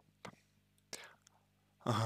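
A pause in a man's speech: a faint mouth click, then a short breath in about a second in, over a faint low hum, with his voice starting again just before the end.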